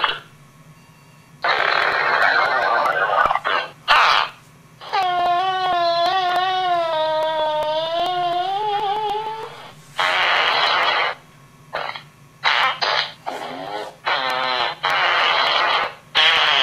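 Loud fart noises: a few rough blasts, then one long wavering, pitched fart of about four seconds, then a run of short sputters.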